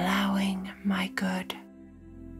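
A woman's soft speaking voice over slow new-age ambient music with long held tones. The voice stops about one and a half seconds in, leaving the music alone.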